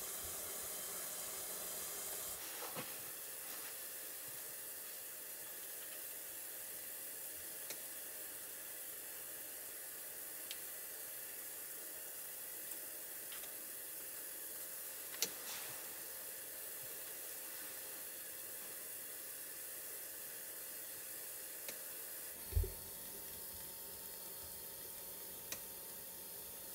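Wooden steamer over a pan of boiling water on a lit portable gas stove, giving a steady hiss of steam and burner flame. A few faint clicks and a soft thump come through about three quarters of the way in.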